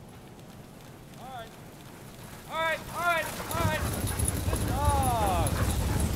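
A sled dog team running up a snow trail. The patter of paws and the sled's rumble grow steadily louder from about halfway in. Over it come several short, high-pitched calls, and one longer falling call near the end.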